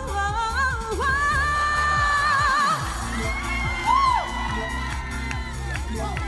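A female vocalist sings a pop ballad live over a band backing track, holding a long, high, belted note with vibrato that ends about three seconds in. The backing music then carries on, with short whoops from the audience.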